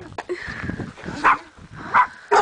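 A dog barks twice, once just past a second in and again at the very end.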